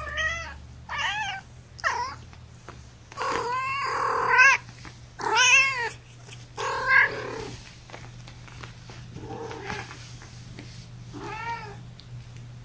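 Young kittens, about four weeks old, mewing in a series of short, high-pitched cries, about eight in all, loudest in the middle, while they play-wrestle and bite one another.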